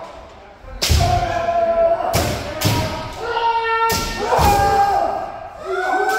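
Kendo sparring: several players' kiai, long held shouts that overlap, punctuated by about five sharp cracks of bamboo shinai striking armour together with stamping feet on the wooden floor.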